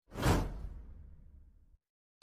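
A whoosh sound effect that swells quickly and then fades away over about a second and a half.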